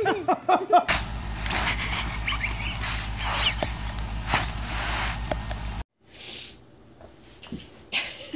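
A cat meowing in the first second, then a kitten's faint high cries over a steady low hum that cuts off suddenly about six seconds in.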